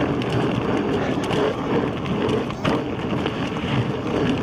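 Inmotion V14 electric unicycle riding over a dirt trail with leaf litter: steady tyre and wind noise, with a few short knocks from bumps, one stronger about two and a half seconds in.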